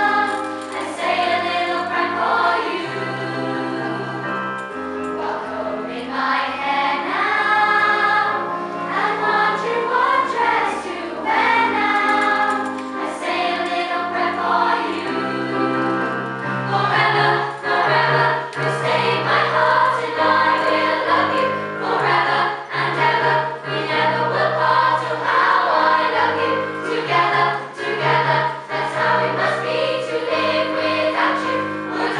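A large girls' choir singing a song, accompanied on keyboard, with steady sustained low notes under the voices.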